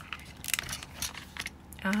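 Handling noises from a laminated ring binder being opened and pressed flat on a table: a few short clicks and plastic rustles from the cover and the metal ring mechanism.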